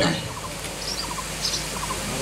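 Faint bird calls: several short, quick chattering runs of notes and a few thin high chirps over a steady background hiss.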